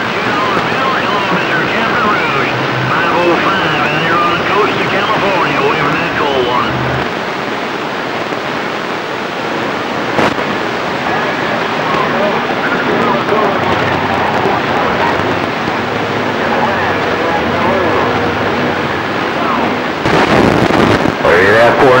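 CB radio receiving on a weak signal: a loud, steady hiss of band noise and static with faint, garbled voices coming and going underneath, and one sharp click about ten seconds in.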